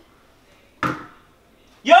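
A single sharp knock about a second in, a handheld container being set down on a hard surface, in an otherwise quiet room.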